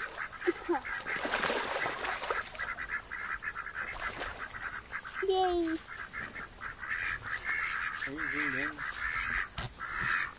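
Ducks calling on a pond: a couple of short calls about half a second in, a longer falling call around the middle, and a few wavering calls near the end, over a steady hiss.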